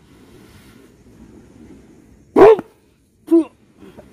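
Two short, sharp voiced cries about a second apart, the first one louder, over faint background noise.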